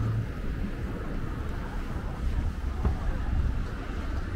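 Wind buffeting the microphone, a steady low rumble, with faint voices of people nearby and a brief tick near the end.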